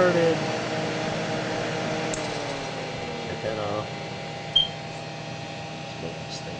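Steady hum of the cooling fans of an Altair 8800b computer and its disc drive running, with a single sharp click about four and a half seconds in.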